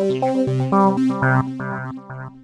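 GForce OB-E software synthesizer playing a sequenced pattern of short pitched notes, about four a second, over lower sustained tones. The sequencer is running in SEM8 mode, triggering only the eighth voice module.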